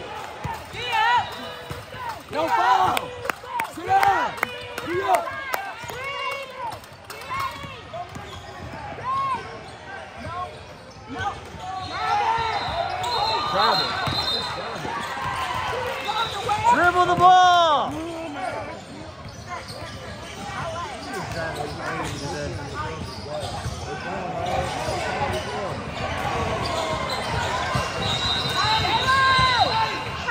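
Basketballs bouncing on a hardwood gym floor, with background voices and short high squeaks throughout and a louder burst of sound about two-thirds of the way through, all echoing in a large gym.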